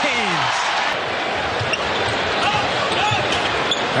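Basketball dribbling on an arena hardwood court, over the steady noise of a large arena crowd.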